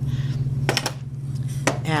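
Two light knocks about a second apart as a wooden bench pin is handled and set down on a stainless-steel worktable.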